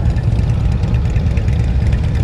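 Touring motorcycles idling together in a stopped group, a steady low engine rumble.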